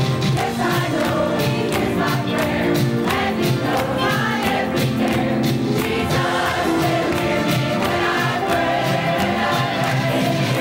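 Large mixed choir singing a gospel song with instrumental accompaniment and a steady beat.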